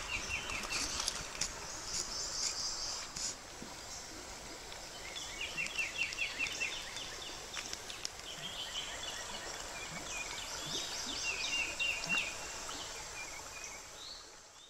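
Birds singing outdoors: several short trills of quick downward-sweeping notes, repeated every few seconds. Beneath them is a faint, high, steady hiss of insects that comes and goes.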